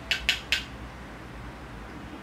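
Makeup brush tapped against a plastic pressed-powder compact: three quick, sharp clicks in the first half second.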